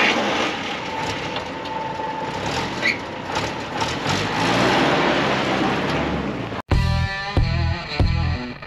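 Willys CJ-2A's four-cylinder flathead engine started and running loudly and roughly, rising a little in pitch a few seconds in. Near the end it cuts off suddenly and rock music with distorted electric guitar comes in.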